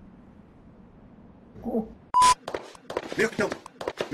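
Faint background noise, then a short voice sound. About two seconds in comes a brief, loud, sharp burst with a steady beep-like tone, followed by choppy, rapidly cut fragments of dubbed speech.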